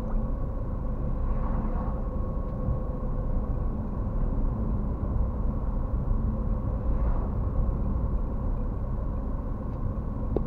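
Road noise inside a moving car: a steady low rumble of engine and tyres with a faint steady tone above it. Two oncoming cars swish past, about a second and a half in and again about seven seconds in.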